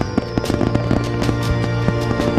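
Fireworks sound effect over a music track: a quick run of bangs and crackles, with a falling whistle near the start.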